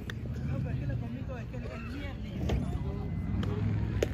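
Spectators' voices chattering in the background over a steady low rumble, with a couple of faint sharp knocks.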